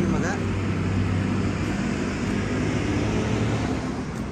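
A steady low engine-like drone with a rushing noise over it. It fades slightly near the end.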